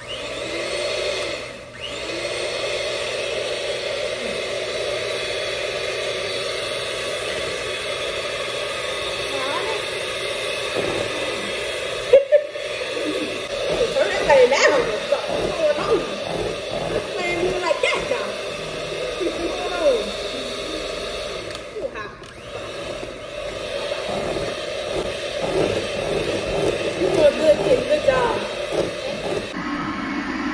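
Handheld electric mixer running steadily in a bowl of batter, with a few brief breaks.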